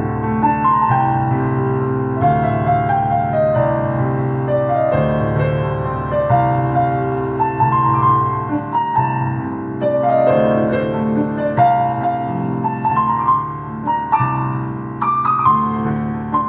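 Electronic keyboard played with a piano voice: a stepping melody of single notes in the right hand over held chords in the left.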